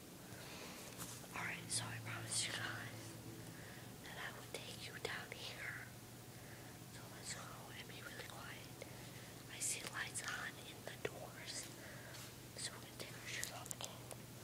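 A woman whispering in short phrases, breathy and without full voice, over a steady low hum.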